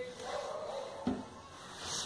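Faint, distant shouting of a street vendor hawking brooms and squeegees, over a light trickle of water poured from a small watering can.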